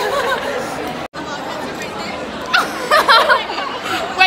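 Several young people's voices talking and chattering in a busy room, breaking off for an instant about a second in, with louder talk near the end.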